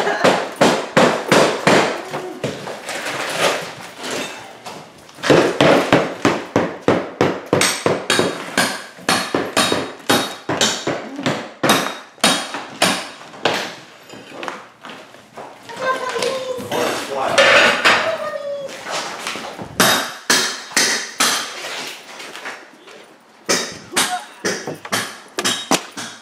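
Racket of rapid, repeated hammer blows breaking up and prying off old floor tiles during demolition, several impacts a second with short lulls.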